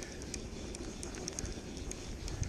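Wind rumbling on the microphone, with light rain making scattered small ticks and patter.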